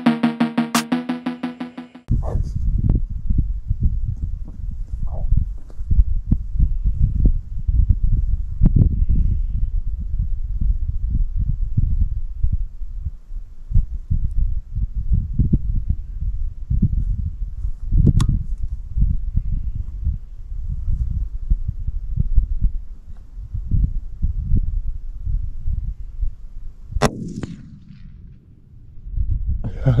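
Background music ends about two seconds in, then wind rumbles on the microphone. A .223 rifle fires once about 27 seconds in, a sharp crack with a brief ringing after it: the shot that drops two rabbits at once; a shorter crack comes about 18 seconds in.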